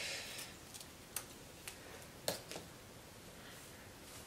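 Small scissors snipping frizzy ends off a curly wig's hair: a few quiet, sharp snips about half a second apart.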